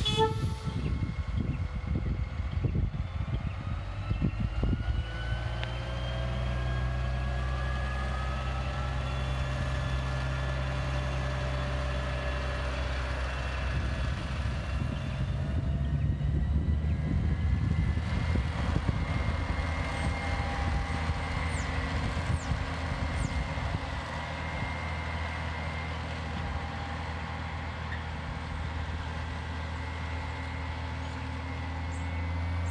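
Diesel engines of a ballast regulator and a track tamper at work on the rail line. There is a short horn toot right at the start and a rapid clatter of knocks in the first few seconds, then a steady engine drone with whines rising in pitch. A steady high tone joins in later.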